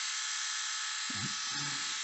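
Philips YS521 rotary electric shaver running on its newly replaced rechargeable batteries: a steady, even buzzing whine from the motor and cutter heads.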